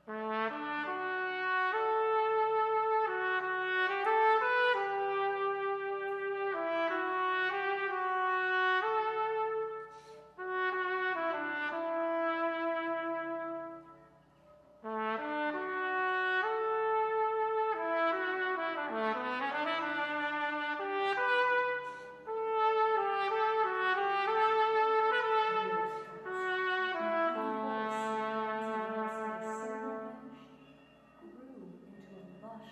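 Solo trumpet playing a slow melody in long, held phrases, with short breaks at about ten, fourteen and twenty-two seconds.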